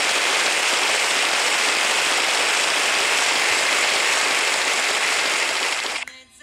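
A loud, steady hiss of noise with no pitch, cutting off suddenly at the end.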